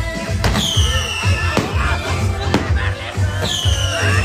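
Fireworks going off: sharp bangs about once a second, two of them followed by a falling whistle. Under them plays music with a steady bass beat.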